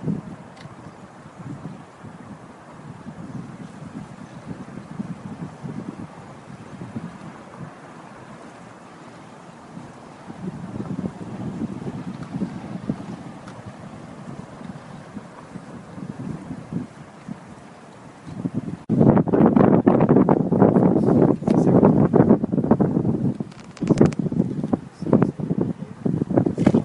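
Wind buffeting the camera's microphone, a low rumble that turns much louder and rougher about three quarters of the way through.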